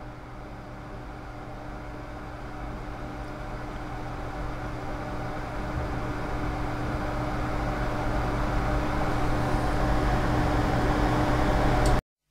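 Steady low hum with a hiss over it and a faint steady tone, growing gradually louder throughout, then cut off abruptly at the end.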